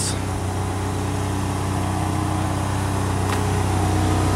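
1995 Ford Ranger's 2.3-litre four-cylinder engine idling steadily.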